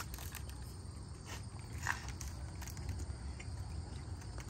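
A few faint crunches and clicks of a snack being bitten and chewed, over a steady low outdoor background rumble.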